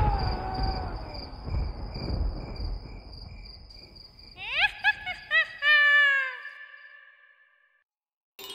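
Cartoon night ambience: crickets chirping in steady pulses while the low end of the song fades out, then a quick run of five or six high, rising-and-falling cartoon calls, the last one longer and falling, before the sound dies away to silence.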